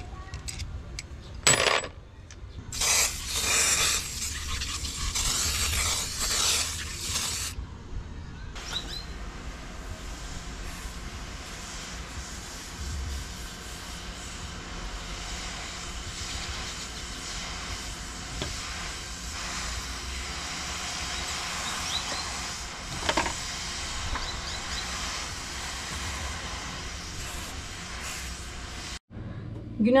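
Aerosol can of WD-40 spraying onto corroded sailboat blocks: a few clicks, then a loud hiss lasting about five seconds, followed by a fainter steady hiss that cuts off abruptly near the end.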